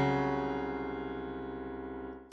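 A low, dissonant chord played on a piano-like keyboard, held and fading steadily.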